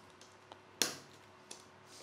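Plastic locking strip of a tool-less hard-drive tray snapping onto a 3.5-inch hard disk: one sharp click a little under a second in, with fainter clicks and taps before and after.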